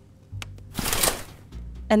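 A short whoosh transition sound effect: a rush of noise about a second in, lasting under a second, over quiet background music.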